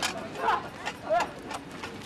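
Outdoor background noise with two short, faint snatches of a voice.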